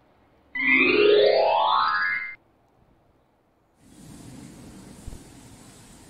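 A loud cartoon-style sound effect: one pitch glide rising steeply over about two seconds, then cutting off. From about four seconds in, a steady outdoor background hiss.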